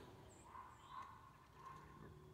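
Near silence, with a few faint, soft sounds about half a second, one second and nearly two seconds in.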